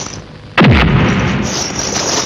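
Dubbed fight sound effect: a loud, sudden punch impact about half a second in, with a falling whoosh and a long echoing tail after it.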